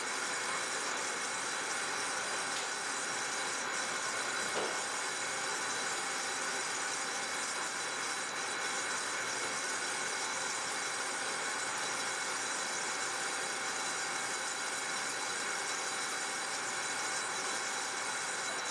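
Metal lathe running at about 630 RPM under power feed while a carbide DNMG insert faces off the end of a steel bushing blank: a steady, even machining noise with a faint high whine.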